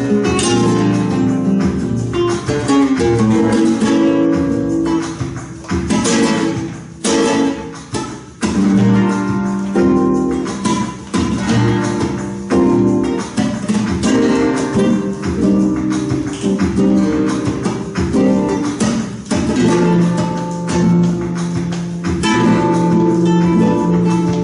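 Two flamenco guitars playing a tangos together, one strumming chords as accompaniment, with sharp strokes cutting through the sustained chords.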